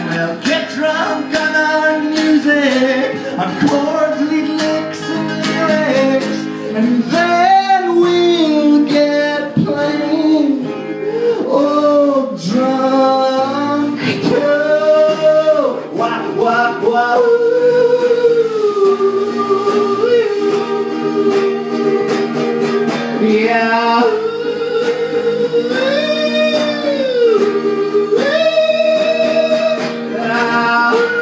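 A man singing, with long held and sliding notes, over a strummed acoustic guitar, played live and heard through a PA in the room.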